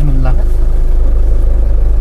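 Car engine running, a steady low rumble heard from inside the car's cabin.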